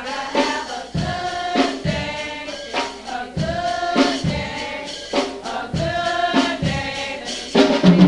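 Church youth choir singing a gospel song together, with sharp percussion strikes keeping a steady beat about every second.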